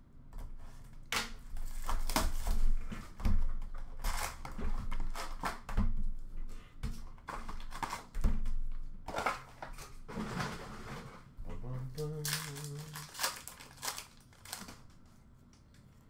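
Cardboard hockey-card retail box being slit open and its wrapped packs pulled out and handled: an irregular run of crinkling, tearing and scraping noises. About twelve seconds in there is a brief low hum.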